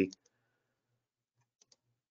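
A few faint, short clicks about one and a half seconds in, from the computer as the presentation slide is advanced to show its next bullet; otherwise near silence.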